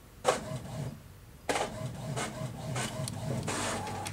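Inkjet printer printing a page. There is a sharp click about a quarter second in, then from about a second and a half in the printer runs steadily with a regular, repeating stroke as the page is printed and fed through.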